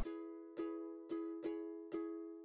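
Quiet background music: a single plucked-string note repeated about twice a second, each one dying away before the next.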